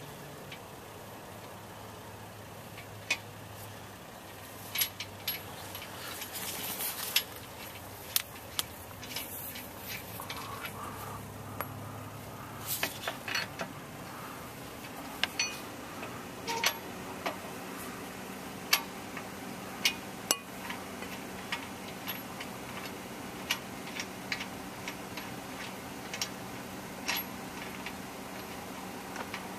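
Wheel nuts being taken off a car wheel's studs, with a cross-shaped lug wrench and then by hand: scattered sharp metallic clicks and clinks as the nuts and wrench knock against the wheel and each other.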